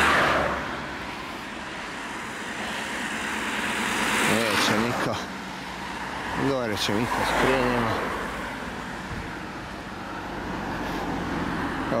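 Cars passing by on a road, each a swelling and fading rush of tyre and engine noise: one fades just after the start, and others build about four seconds in and again around seven.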